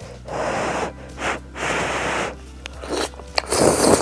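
Glass noodles in jjajang sauce being slurped into the mouth: a run of breathy sucking slurps with short gaps, the loudest near the end.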